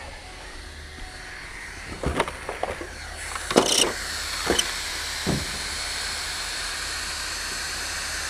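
A few short knocks and clicks from an RC car's chassis being handled on a car's trunk lid. From about three seconds in, a steady hiss runs underneath.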